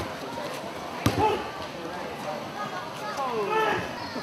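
A judoka landing hard on the judo mat from a throw, one sharp thud about a second in. Spectators' voices and shouts carry on around it.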